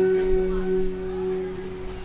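A held note from a live band's intro, a near-pure tone with a lower octave beneath it, ringing on and slowly fading between phrases.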